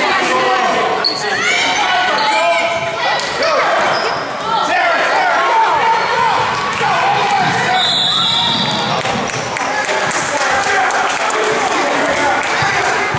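Youth basketball game: a basketball bouncing repeatedly on a gym floor, amid shouting voices of players and spectators.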